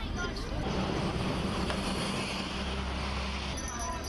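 Busy city street noise: a steady rumble of traffic with the murmur of a crowd, the sound changing near the end.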